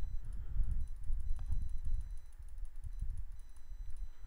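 Low, uneven background rumble with a faint single click about a second and a half in.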